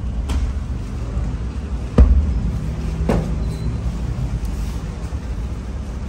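Tafton dough slapped onto the inside wall of a clay tandoor with a baker's cushion. One loud thump comes about two seconds in and a lighter knock a second later, over a steady low rumble.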